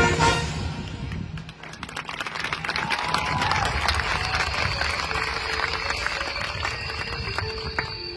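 Marching band show music: a loud held brass chord cuts off just at the start. It gives way to a quieter, eerie passage of scattered clicks and rattles over a hiss, and thin sustained high and low tones come in about halfway.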